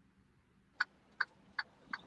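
Four short clicks, evenly spaced about 0.4 s apart, over near silence.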